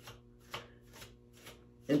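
Long synthetic wig hair rustling in a quick run of soft strokes, about three or four a second, as it is raked through and fluffed by hand.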